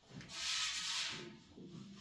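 A rough rushing scrape lasting about a second as a padded strongman log is hauled off the floor and rolled up the lifter's thighs onto his lap, its padding rubbing against his clothes.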